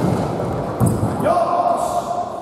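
A sharp knock at the start and heavy thuds about a second in, then a long shout held on one steady pitch, ringing in a large gym hall.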